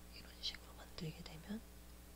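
A person whispering softly under their breath in a few short sounds, between about a quarter second and a second and a half in, over a faint steady hum.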